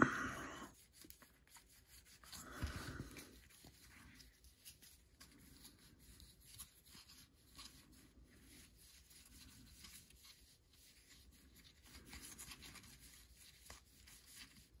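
Faint rubbing and small clicks of a stack of baseball cards being slid and flipped through by hand, card sliding against card, with a brief louder sound about three seconds in.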